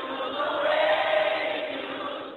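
Several voices singing together in a slow, sustained worship song, heard through the narrow, muffled sound of a telephone line.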